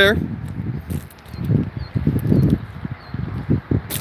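Irregular low rumble of wind and handling on a handheld camera's microphone, with light crunches of footsteps on gravel.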